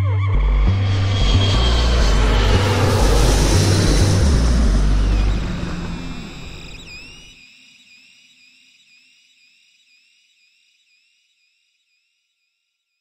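Closing electronic music: deep bass notes under a broad whooshing swell, which fades out over the second half. A faint, repeating high echoing tone carries on after the rest has died away.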